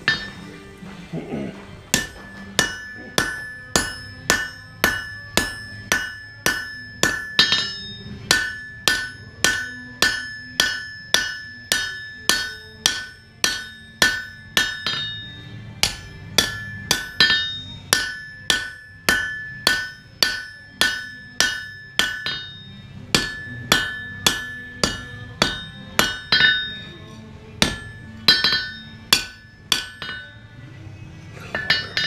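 Blacksmith's hand hammer striking a red-hot steel knife blank on an anvil, forging it. The blows start about two seconds in and come steadily at roughly two a second, each with a bright ring from the anvil, broken by a few brief pauses.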